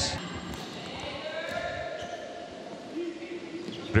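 Volleyball court sound in a gym: the ball being struck, players calling out, and the hum of the hall. A sharp, loud hit comes just before the end.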